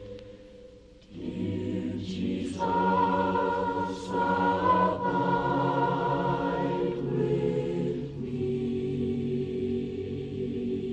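Church family chorus singing a hymn in long held chords, starting again after a short pause about a second in; the chord shifts near the end as the closing notes are held.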